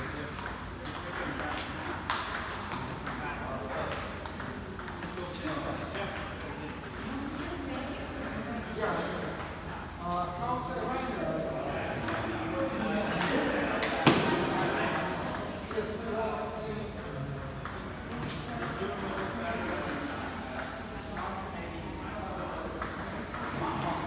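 Table tennis ball clicking off the paddles and the table through rallies, the sharpest hit about 14 seconds in, with people's voices talking in the background.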